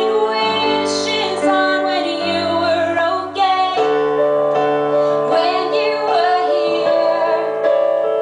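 Female vocalist singing live with keyboard accompaniment. The voice wavers on long held notes over sustained low chords.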